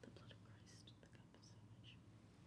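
Near silence: faint steady room hum with a few soft whispered sounds.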